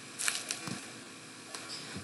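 A few faint, short clicks and noises in a quiet room, spread over the second and a half before speech resumes.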